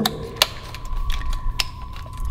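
A few sharp clicks and light rattles as a leather shoulder holster and its metal snap-button hardware are handled.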